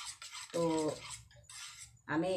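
Metal spoon stirring milk and scraping against the inside of a steel bowl, in several short strokes.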